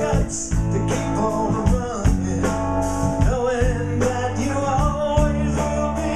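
Live blues-rock band playing with a steady drum beat, bass, electric guitar and steel guitar, a man singing lead over it.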